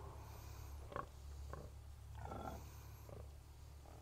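A sow giving soft, short grunts at intervals to call her newborn piglets as they nurse, the loudest about a second in. A faint low rumble runs underneath.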